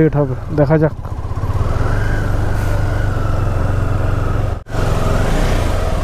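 KTM 390 Adventure's single-cylinder engine running steadily at low revs as the motorcycle rolls slowly to a stop. The sound cuts out suddenly for a moment about two-thirds of the way through.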